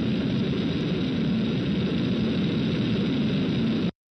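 A steady rumbling noise with no clear pitch, which cuts off abruptly just before the end.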